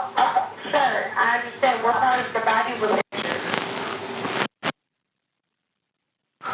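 A voice on a recorded emergency phone call, thin and hard to make out, for about three seconds. Then comes about a second and a half of steady hiss, and the sound cuts out to dead silence.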